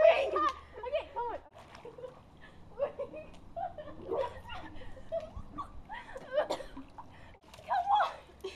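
Girls' voices laughing and squealing in short bursts, with no clear words, breaking off abruptly twice.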